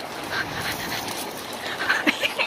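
Dry leaves and brush rustling and crunching underfoot, with a brief pitched call-like sound near the end.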